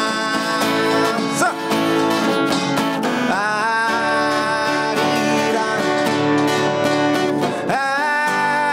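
Live Korean fusion pungmul song: a man sings long held notes, sliding up into them, over strummed acoustic guitar. Korean traditional drums (janggu and buk) play along underneath.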